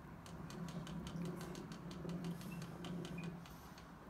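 Clockwork spring motor of an HMV Monarch horn gramophone being hand-wound at its side crank: a run of quick, irregular clicks over a low, steady whirr.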